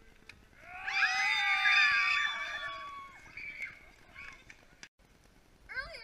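A loud, wavering beast roar of about two seconds, starting about a second in and sliding down in pitch as it fades, voicing a costumed monster.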